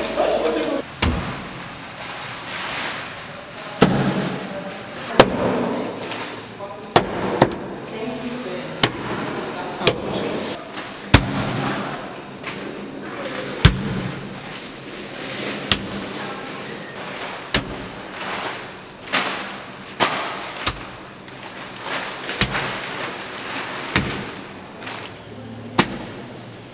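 Lumps of clay slapped and pressed by hand onto a wall: sharp, short slaps at irregular intervals, about one every second or two.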